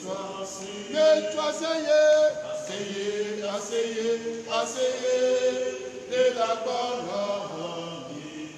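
A male voice chanting a liturgical text, held notes that move slowly in pitch with short breaks between phrases.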